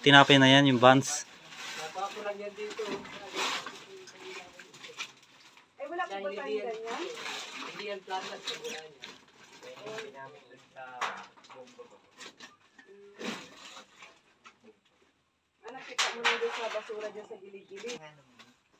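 Indistinct, quiet voices talking on and off, mixed with scattered short rustles and knocks from sacks being handled.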